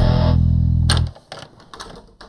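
Cartoon background music: a held, distorted electric guitar and bass chord that cuts off about a second in, followed by a few faint short clicks.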